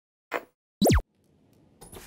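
Electronic glitch sound effects: a short burst of noise, then a loud, quick downward pitch sweep about a second in, a faint hiss, and another brief burst near the end.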